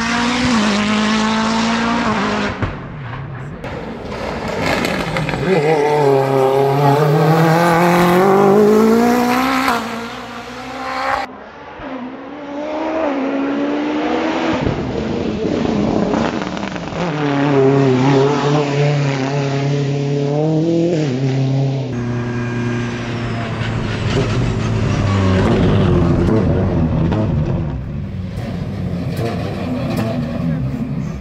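Mitsubishi Lancer EVO X RS Group 1 hill-climb car with its turbocharged 2.0-litre four-cylinder driven flat out. The engine note climbs hard through the gears and drops at each shift and for the corners. It is heard in three separate passes cut together.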